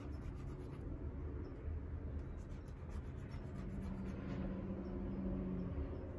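Damp cotton swab rubbing and scratching across paper as it is brushed back and forth, over a steady low rumble. A low steady hum comes in about midway and stops just before the end.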